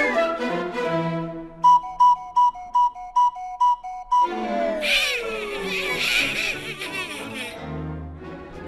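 Orchestral cartoon score. Partway in, a whistle repeats a two-note call, high then lower, about eight times. It then gives way to a long falling glide and busier music.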